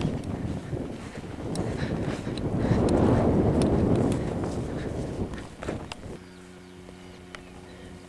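Footsteps through long field grass, with a rushing noise on the microphone that is loudest about three seconds in. About six seconds in this gives way to a quiet, steady low hum.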